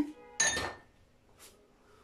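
A single sharp clink of kitchenware with a brief ring, about half a second in, then a faint tap about a second later.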